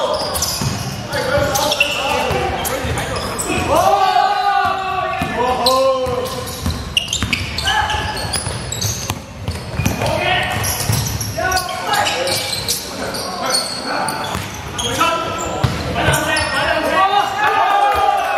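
Basketball game in progress: the ball bouncing on a wooden court floor among players' footsteps, with players calling out to one another, all echoing in a large sports hall.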